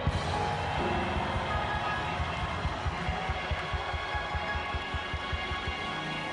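Church music with a steady beat, played under a large congregation praising aloud.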